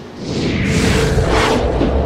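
Opening of a channel intro sting: a swelling whoosh over a deep bass that comes in about a third of a second in, leading into intro music.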